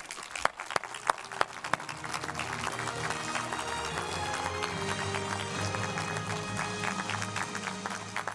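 Audience applauding with music playing over it. Separate claps stand out in the first two seconds, then the music's held notes carry on under the applause.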